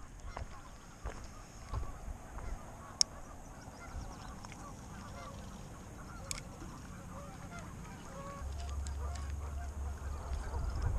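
Waterfowl calling, many short honking calls overlapping throughout. Two sharp clicks come about three seconds apart, and a low rumble sets in near the end.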